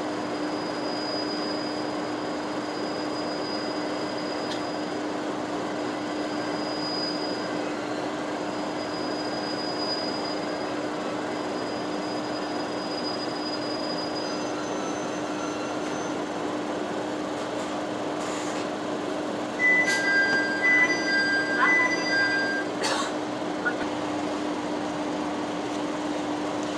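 Tosa Kuroshio Railway diesel railcar heard from inside the car, with a steady running hum as it slows into a station. About three-quarters of the way in, the brakes squeal with steady high tones for a few seconds as the train comes to a stop. This squeal is the loudest part.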